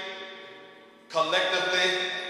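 A man singing unaccompanied in a slow, drawn-out way: a held note fades away, then a new sustained phrase begins about a second in.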